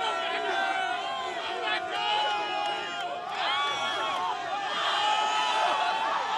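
A crowd of football fans shouting and cheering, many voices overlapping at once.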